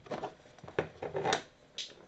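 A few brief, soft handling noises, light clicks and rustles, from a hand working on a plastic model tank turret.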